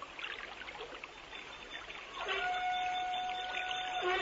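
Trickling, running water, a stream sound effect in a radio play. About halfway through, a steady held tone with overtones joins in and keeps sounding.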